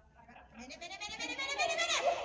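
A dog's high-pitched vocalising, a wavering squealing cry that starts about half a second in and grows louder, falling in pitch near the end.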